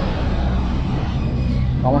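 Steady low outdoor background rumble of an urban plaza, with no distinct event standing out. A man starts to speak near the end.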